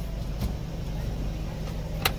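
Car engine idling, a steady low hum heard from inside the cabin, with one faint click about half a second in.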